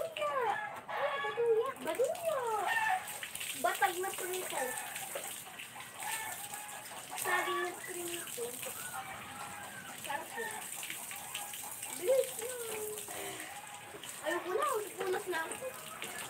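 People's voices talking on and off, fainter than close speech, with short pauses between phrases.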